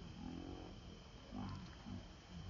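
Macaque giving several short, low calls that bend in pitch.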